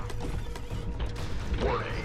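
Film sound effects of a giant robot's moving parts: dense mechanical clicking and ratcheting over a deep rumble, with music score underneath.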